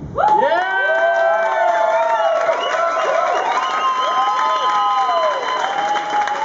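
Club audience cheering, whooping and clapping, breaking out suddenly at the end of a song. Many whoops and shouts overlap over the clapping.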